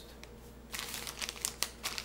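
A plastic M&M's candy bag crinkling as it is picked up and handled, starting under a second in as a run of irregular crackles.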